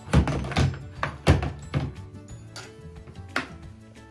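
Background music with steady held notes, over a few dull knocks and thumps from handling, the loudest in the first second and a half.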